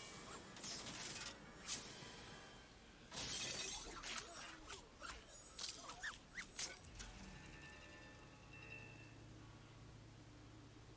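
Film soundtrack with shattering and breaking sound effects over music: several sudden noisy bursts and sharp crackles in the first seven seconds, then it settles quieter.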